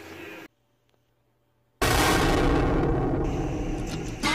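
Sound cuts to dead silence for about a second, then a sudden loud boom that dies away slowly over about two seconds.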